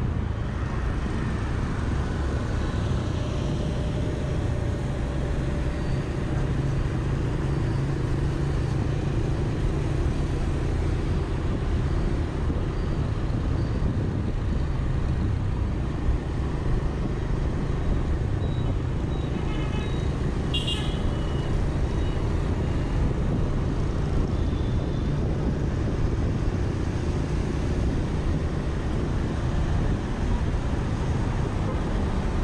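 Steady low rumble of riding a Honda motor scooter through city traffic, its engine and road noise mixed with wind on the microphone. About two-thirds of the way through, a short beep of a vehicle horn.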